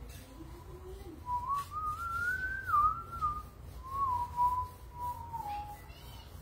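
A person whistling a slow tune, one clear note at a time, climbing in pitch from about a second in and then falling back and levelling off near the end.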